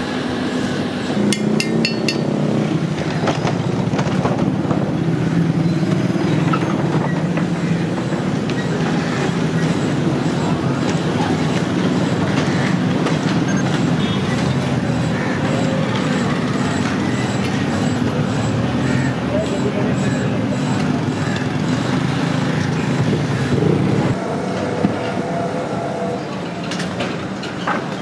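A steady, loud, low mechanical drone that runs unbroken, with a few sharp metallic clicks about one to two seconds in and voices under it.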